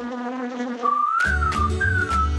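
Cartoon insect-buzz sound effect for about the first second, then a whistled melody gliding up and down over a pulsing bass beat as cartoon theme music starts.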